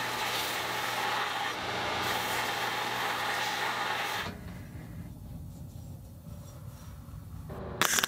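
Homemade 2x72-inch belt grinder running with a steel horseshoe held against the abrasive belt: a steady, loud grinding rasp over the motor's hum, cleaning dirt and crud off a used shoe. A little past halfway the grinding stops and a quieter, lower running sound carries on.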